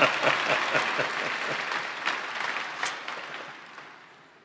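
Large audience applauding, the clapping fading away steadily over about four seconds until it has nearly stopped.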